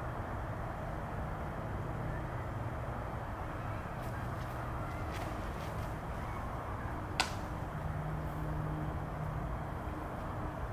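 A disc golf drive: a few faint footfalls of the run-up, then a single sharp snap about seven seconds in as the disc is thrown, over a steady low outdoor hum.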